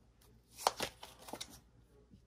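Tarot cards being drawn off the deck and laid down on a cloth-covered table: a few short snaps and slides of card stock, the sharpest a little over half a second in.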